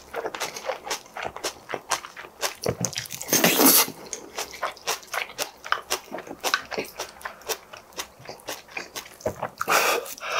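Close-miked chewing of a mouthful of bibimbap with seasoned spring greens: many quick, wet smacks and crunches, with a louder noisy burst a little over three seconds in.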